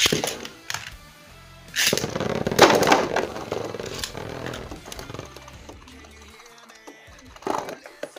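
A Beyblade top is launched into a plastic stadium with a sharp clack. About two seconds in, the spinning tops clash and grind against each other loudly for a second or two, then one top's spin whirs down on the plastic floor. A short clatter comes near the end as the tops are picked up, with music playing underneath.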